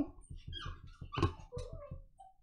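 A dog whining softly in short, broken sounds, with a few small clicks.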